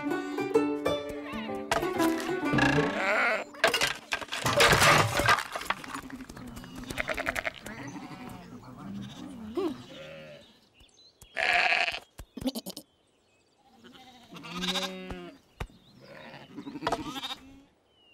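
Cartoon sheep voices bleating and grunting over background music, with several sudden sound effects, the loudest noisy bursts about four to five seconds in and again near the middle.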